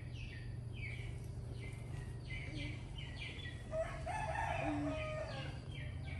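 A rooster crows once, starting nearly four seconds in and lasting about a second and a half, over a bird's repeated short falling chirps, roughly two a second, and a steady low hum.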